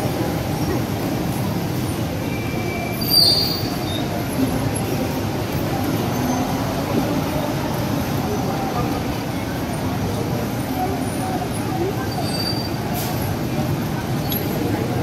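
Steady rumble of heavy, slow-moving city traffic. About three seconds in there is a brief high squeal with a sharp clatter, and a fainter squeal comes near the end.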